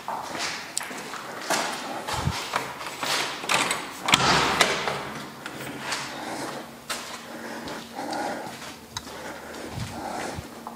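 Irregular scuffs, clicks and rustles of a person walking and moving a handheld camera around, with the loudest cluster about four seconds in.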